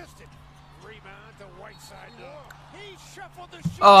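Faint basketball broadcast audio: a commentator's voice over a steady low hum. A man's loud exclamation breaks in near the end.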